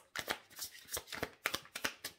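A deck of cards being shuffled by hand: a quick, irregular run of short papery clicks, about five a second.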